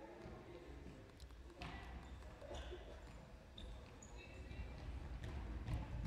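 Faint sports-hall sounds of a futsal game: a few sharp ball strikes and short high squeaks of shoes on the wooden floor, with distant players' voices.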